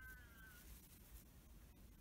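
Near silence: room tone, with one faint, short high-pitched cry that falls slightly in pitch right at the start.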